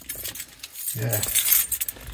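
A bunch of keys on a ring with a car key fob jangling in the hand, a run of small metallic clinks that is busiest in the second half.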